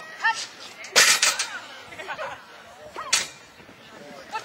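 Agility teeter-totter board banging down once onto the ground as the dog rides it to the low end: one loud, sharp bang about a second in, with a short ringing after it.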